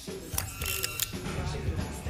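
Film sound effect of the arc reactor's mechanism clicking and whirring as a new palladium core is fitted into it: a quick run of mechanical clicks about half a second in, over a low music score.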